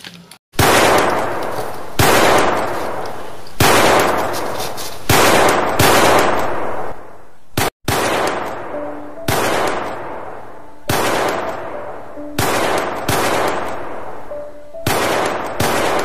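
Gunshot sound effects in a staged shootout: a loud shot about every second and a half, each one trailing off in a long echoing decay.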